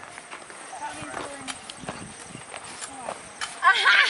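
Faint voices and scattered light knocks, then a loud, high-pitched voice calling out near the end.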